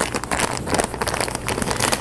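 Plastic bag crinkling in quick, irregular crackles as it is squeezed and kneaded by hand. The bag holds a soft charcoal and psyllium paste being worked to mix out the lumps.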